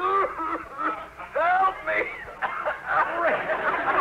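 A man's voice moaning and groaning in mock agony, like a deathbed scene, as if choking.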